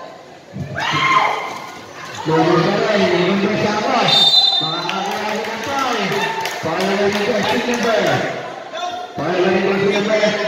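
Mostly a man talking, echoing in a large hall, with a brief high tone about four seconds in.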